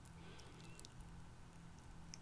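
Near silence: a low steady hum of room tone, with a few faint light ticks as hands handle a shrink-wrapped picture frame.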